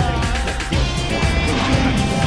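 Electronic intro music for a logo animation, with a swooping sound effect near the start.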